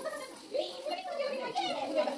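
Children talking and playing, with high-pitched young voices chattering.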